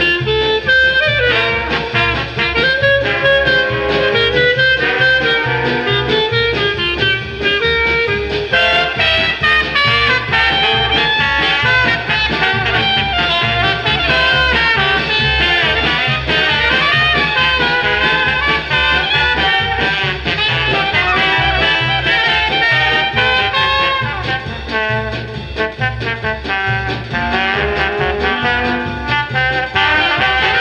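Traditional Dixieland jazz band (trumpet, two trombones, clarinet, piano, banjo, tuba and drums) playing an instrumental chorus in swing time over a steady beat, with no vocal. It is played back from a 1958 16-inch transcription disc.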